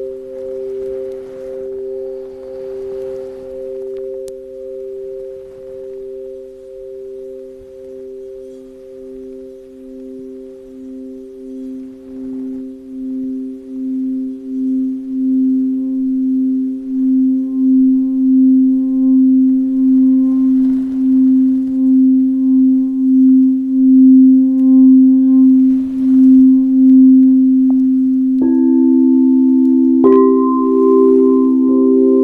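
Clear crystal singing bowls ringing in several steady, overlapping tones. From about twelve seconds in, the lowest bowl grows steadily louder with a slow pulsing waver as a wand is worked around its rim. Near the end another bowl is struck, adding a higher tone.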